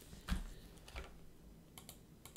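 A few separate, faint keystrokes on a computer keyboard as numbers are typed into a field.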